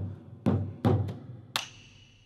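Large Thai barrel drum (klong tad) beaten with sticks, giving deep strokes at an uneven pace about half a second apart to time the puppet-dance steps. A ringing metallic tone joins the stroke about one and a half seconds in.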